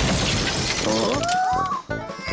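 Cartoon crash sound effect with a shattering noise, sudden at the start and fading out within about a second, over background music, followed by a few sliding tones that rise and fall.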